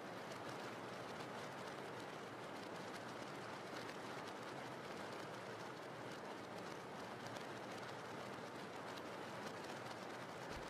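Faint, steady rain: an even hiss with a fine patter of drops.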